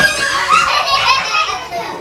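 A group of young children talking, calling out and laughing all at once in a classroom, their voices overlapping.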